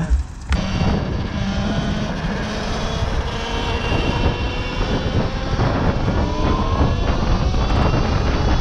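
Talaria XXX electric dirt bike under way, its electric motor giving a whine that climbs slowly in pitch over a steady rush of wind and road noise. It starts suddenly about half a second in.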